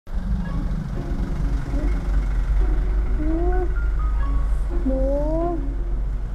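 Steady low rumble of street traffic, with background music over it that carries rising, sliding notes, the clearest a little after three seconds and about five seconds in.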